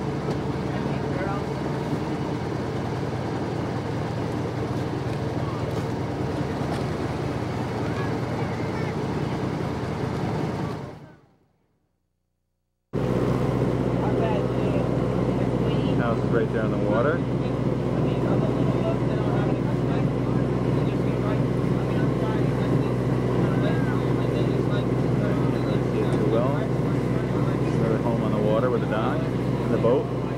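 A boat's engine running steadily with a low hum, heard from on board. The sound fades out about eleven seconds in, stops for about two seconds, then comes back a little louder.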